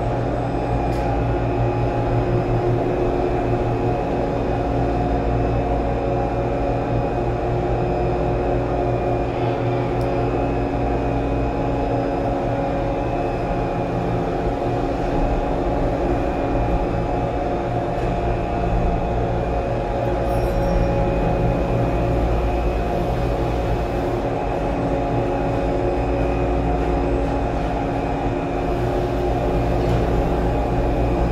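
POMA detachable gondola station machinery heard from inside a cabin as it is carried slowly through the station: a steady mechanical hum and low rumble with several held tones.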